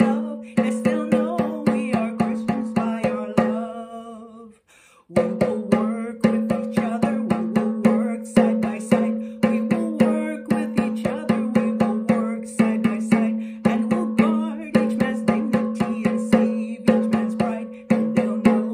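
A woman singing a theme song while beating a Remo hand drum in a steady rhythm of about four strokes a second. Drum and voice stop for a moment about four and a half seconds in, then carry on.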